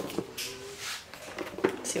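Cardboard packaging of an iPad Pro box being handled, a few light knocks and scrapes as the box and its inner tray are moved.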